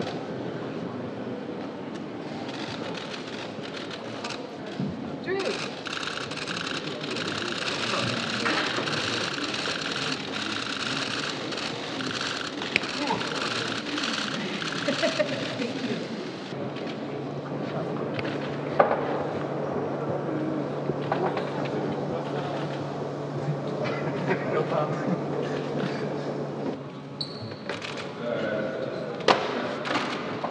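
Indistinct chatter of people in a hall, with scattered sharp clicks of camera shutters as photographers shoot. A steady low hum runs through the second half.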